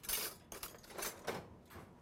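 A kitchen drawer being opened and metal utensils clattering in it as one is taken out: a few soft rattles and scrapes in the first second and a half.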